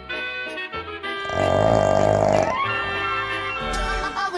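Background music with brass instruments, broken a little over a second in by a loud, rough snoring sound effect lasting about a second.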